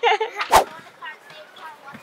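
A single sharp knock about half a second in, then faint voices.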